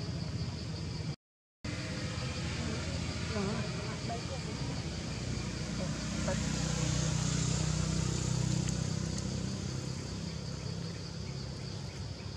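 A steady low motor-like rumble that swells for a few seconds about halfway through, with faint short squeaks over it. There is a brief dropout to silence about a second in.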